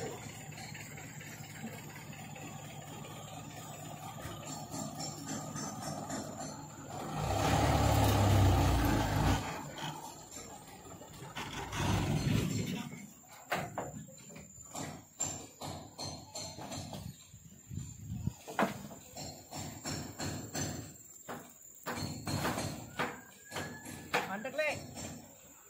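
Dump truck engine running at idle, rising to a loud low rumble for about two seconds around seven seconds in and again briefly near twelve seconds, while the truck unloads fill soil. After that come irregular metallic knocks and clanks.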